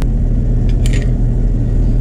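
Steady low machine hum, with a short clink a little under a second in.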